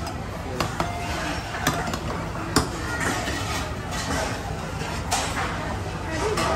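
Metal spoons and a ladle clinking against bowls and a steel hotpot: a handful of sharp clinks, the loudest about halfway through, over a murmur of restaurant chatter.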